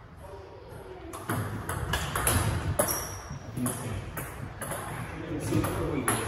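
Table tennis rally: the celluloid-type ball bouncing on the table and struck back and forth by rubber-faced bats, a quick series of sharp clicks about every half second from about a second in.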